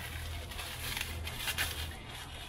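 Plastic packaging rustling and crinkling as it is handled, with many small crackles.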